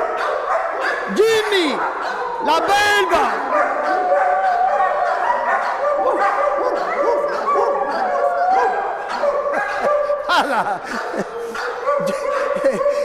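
Several dogs barking and yelping excitedly, with long drawn-out whines in between. A large dog is straining on its leash.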